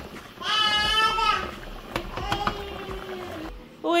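A young child's wordless calls: a high, wavering cry about half a second in, then a lower drawn-out one that stops just before the end.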